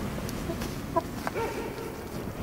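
A few short clucking calls, like a chicken's, between about one and two seconds in, over a steady low outdoor rumble.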